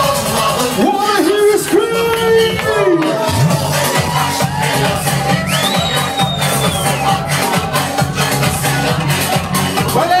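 Loud electronic dance music with a crowd's voices over it; a steady bass beat comes in about three seconds in.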